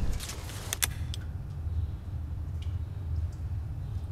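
A low steady rumble with a few sharp clicks: two close together just under a second in, then fainter ticks later.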